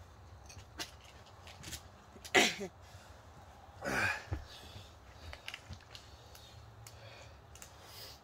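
A person's short, loud pained vocal outbursts, one about two and a half seconds in and a smaller one about four seconds in, each falling in pitch, with a few faint clicks between: the distress of someone suffering the burn of a 13-million-Scoville chocolate bar.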